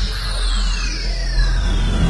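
Logo-ident sound effects: a deep steady rumble with two whistling sweeps falling in pitch across it.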